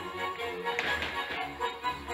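Polish folk dance music playing, with dancers' shoes tapping on the stage floor and a brief louder scuff a little under a second in.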